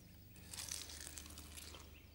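Faint chewing of a mouthful of crumb-coated chicken Kiev, a run of small crackles starting about half a second in.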